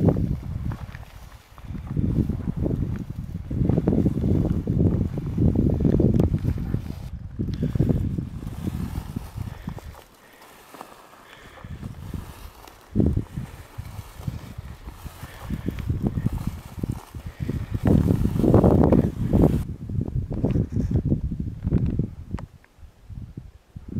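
Wind buffeting the microphone in irregular gusts, a loud low rumble that eases off for a couple of seconds about halfway through.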